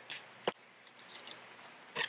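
Raw venison ham and its freshly boned-out leg bone being pulled apart: faint wet squishing of meat, with one sharp click about half a second in.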